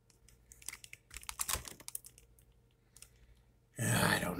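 Handling noise: faint, irregular clicks and taps, then a brief louder rustle just before the end.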